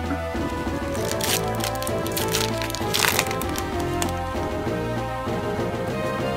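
Background music with a steady bass line, over which a foil booster pack crinkles and tears open in two crackly bursts, about a second in and again about three seconds in.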